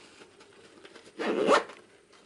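Hook-and-loop (Velcro) mounting strap of a saddle bag ripped open once: a short, loud rasp a little over a second in, after quiet fabric handling.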